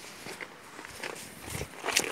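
Footsteps on wet, grassy ground: a few irregular soft crunching taps, the loudest near the end.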